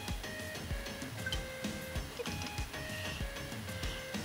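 Background music with a steady beat and a simple melody of held notes.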